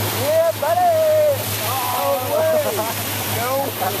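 Excited human voices calling out in long rising-and-falling exclamations without words, with a laugh near the end. Underneath runs a steady low boat-engine hum and rushing water along the moving hull.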